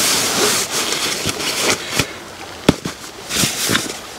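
Nylon rucksack being pushed and settled onto a sleeping mat inside a tent: fabric rustling, with two sharp clicks about two seconds in, under a second apart, and more rustling after.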